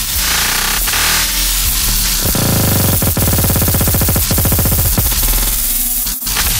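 Dubstep track with a heavy, fast-pulsing bass, loud drum hits and dense high-end noise, without vocals.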